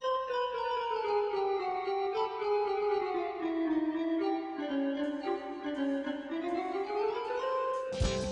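Instrumental keyboard music with no singing: a melody of many short notes stepping steadily down in pitch, then climbing back up over the last couple of seconds.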